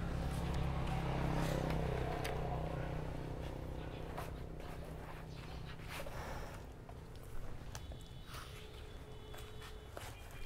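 A motorbike engine running with a low, steady hum that fades away over the first few seconds. Short knocks of plastic nursery pots being handled and set into a basket are heard throughout.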